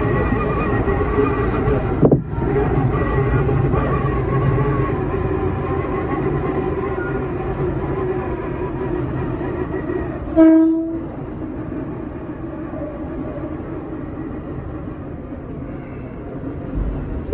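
Tobu 10000 series electric train heard from the driver's cab: steady running noise of wheels and motors, with a sharp knock about two seconds in and a short horn blast about ten seconds in. After the horn the running noise is a little quieter as the train slows into the station.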